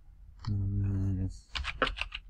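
A short burst of computer keyboard keystrokes, several quick key presses in the second half, following a held, wordless hum of a man's voice.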